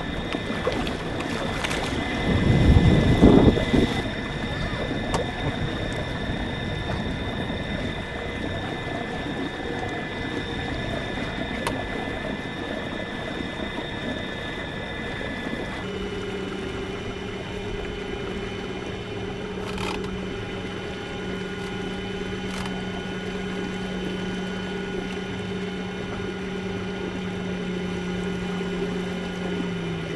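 A small boat motor pushing an outrigger kayak, running steadily with a whine. Its tone shifts about halfway through, and there is a brief loud rush about two seconds in.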